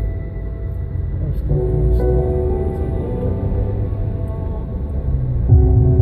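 Music playing in the car, with no vocals: held synthesizer chords over a deep bass. The chords change about one and a half seconds in, and again near the end, where it gets louder.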